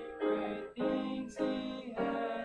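Piano music: slow held chords, a new chord struck about every half second.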